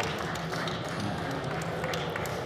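Busy convention-hall hubbub: a steady wash of background noise with scattered light taps and clicks.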